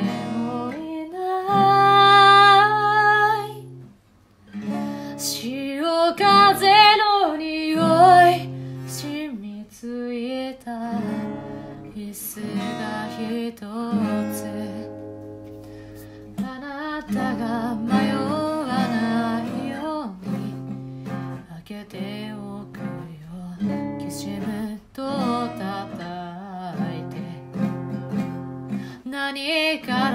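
A woman singing to her own acoustic guitar, plucking and strumming chords under sung phrases, with a short break a few seconds in.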